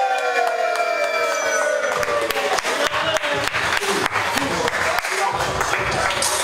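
A man's long drawn-out "yeah" over a PA system, sliding slowly down in pitch. About two seconds in, music with a steady beat starts.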